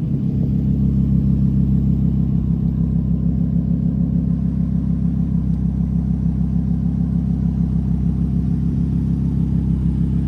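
Lamborghini Huracán LP610-4's 5.2-litre V10 idling steadily through an aftermarket Soul Performance exhaust, a low even drone with no revving.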